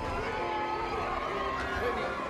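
Several people's voices calling out over a steady bed of background music.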